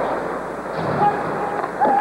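Steady murmur of an arena crowd during an ice hockey game, heard through a television broadcast, with a commentator's voice starting near the end.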